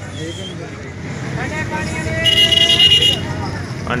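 Background voices and traffic noise, with a vehicle horn sounding high and steady for about a second just after the halfway point.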